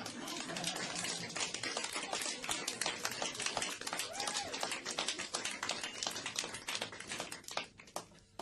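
Many camera shutters clicking fast and overlapping, like a pack of press photographers shooting at once, thinning out and stopping near the end.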